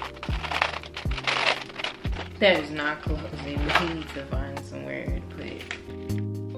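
Background hip-hop instrumental with a steady kick drum about every three-quarters of a second and a sung vocal line in the middle, over the crinkle of a plastic bag being handled.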